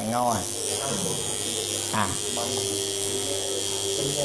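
Tattoo machine running with a steady electric buzz as the needle works on practice skin.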